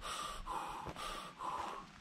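A person's short, forceful breathy puffs, about four in two seconds, as of someone blowing hard on a newly lit campfire to get it going.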